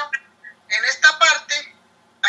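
Only speech: a woman talking in short phrases, her voice thin and phone-like as heard through a video call.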